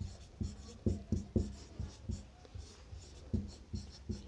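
Marker pen writing on a whiteboard: a string of short, irregular strokes, busy in the first second and a half and again near the end, with a lull in between.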